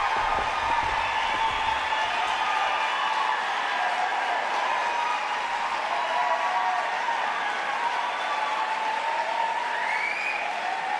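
Audience applauding steadily after an a cappella quartet performance, with some voices calling out in the crowd.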